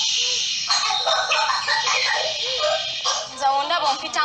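A woman's high-pitched voice in short, broken cries or shouts, with no clear words.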